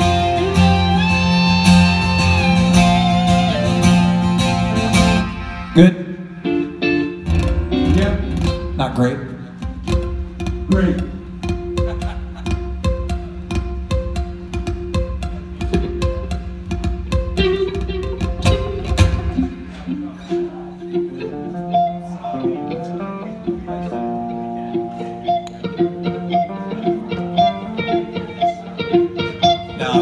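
Rock band playing through a theatre PA at a sound check, with guitars over bass and drums. The full band stops sharply about five seconds in. Loose guitar playing with scattered sharp hits follows, and it thins out, losing the low end, after about twenty seconds.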